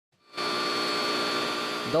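Angle grinder with a sanding disc running against a metal boat propeller blade: a steady whine with several high tones over a hiss, fading in just after the start.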